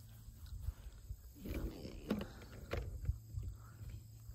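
Low, steady wind rumble on the microphone outdoors, with a few light clicks of handling.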